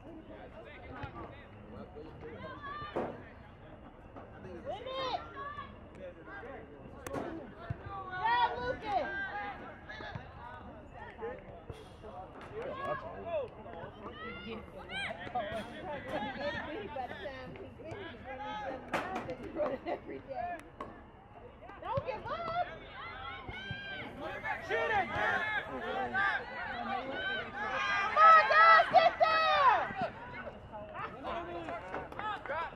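Voices shouting and calling out during a soccer match, loudest near the end as play comes close, with a few sharp thuds of the ball being kicked.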